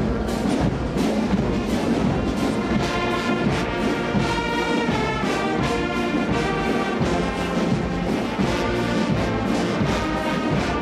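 Brass band playing a slow piece, with sustained brass chords over a steady beat.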